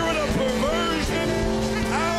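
Live worship music: held keyboard chords with raised voices over them, loud and steady.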